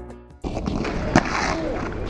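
Background music cuts out and gives way to outdoor ambience. About a second in, a single sharp knock stands out: a guard's boot stamping on the paving as he loses his footing and falls.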